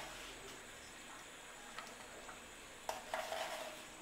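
Khichuri simmering in an aluminium pot, a faint steady bubbling hiss, with a spoon clink about three seconds in as a spoonful of salt is tipped in.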